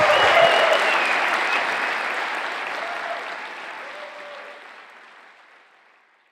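Audience applauding at the end of a talk, loudest at first and fading away toward the end.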